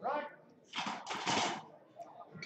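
A sharp call rising in pitch, then about a second of loud, hoarse shouting from people around the platform as a competition bench press is completed.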